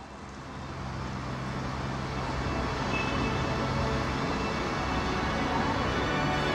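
Edited film-intro sound bed fading in from silence: a swelling wash of noise over a steady low drone, growing louder through the first few seconds and then holding.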